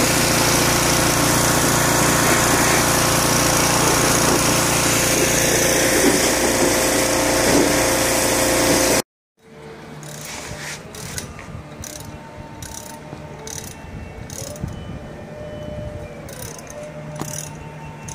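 A pressure washer spraying, loud and steady, which cuts off abruptly about nine seconds in. After it, quieter scattered metal clicks and knocks as the golf cart's rear axle hub is handled.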